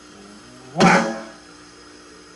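A single accented stroke on an electronic drum kit, played through an amplifier, with a sharp attack and a pitched ring that dies away in about half a second.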